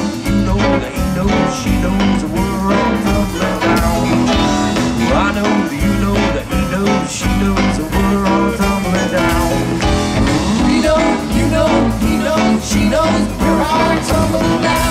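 Live rock band playing an instrumental passage: electric guitars, bass, drums and keyboards, with a lead line whose notes slide up and down in pitch over a steady drum beat.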